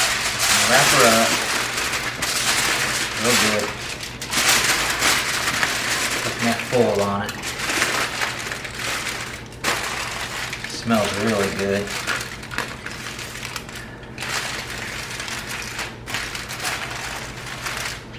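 Aluminium foil crinkling and crumpling as it is folded and crimped by hand, busiest in the first half and thinning out toward the end.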